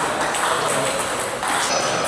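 Table tennis ball being hit back and forth in a rally: sharp clicks of the ball off the rubber-faced bats and the table.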